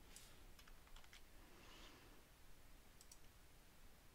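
Near silence with faint clicks of a computer mouse and keyboard: one at the start, a quick cluster about a second in, and a pair near three seconds.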